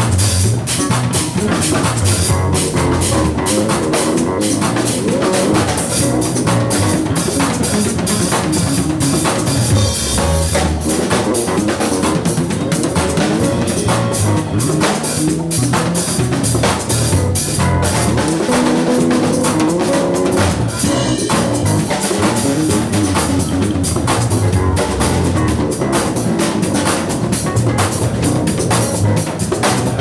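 Live instrumental gospel chops jam: a drum kit playing busy, fast patterns with snare and rimshot hits and cymbals over electric bass lines and keyboards.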